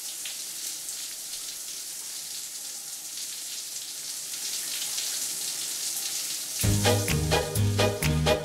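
A shower running, water spraying in a steady hiss. About six and a half seconds in, the song's music comes in with a heavy bass beat and percussion.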